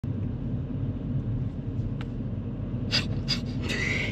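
Steady low rumble of a car being driven, heard from inside the cabin. About three seconds in, a few short, sharp breathy gasps run into a brief laugh.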